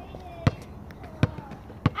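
A basketball dribbled on an asphalt driveway: three sharp bounces, about two-thirds of a second apart.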